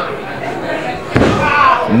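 A single heavy thud from the wrestling ring about a second in, as a knee strike lands on the seated opponent's back.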